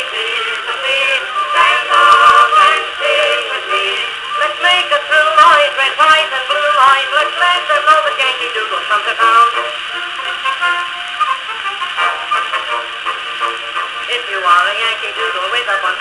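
A 1903 acoustic-era disc record playing band music on a 1921 Victrola VV-VI wind-up phonograph. The sound is thin and narrow-ranged, with no bass, and carries a steady crackle of surface noise from the old record.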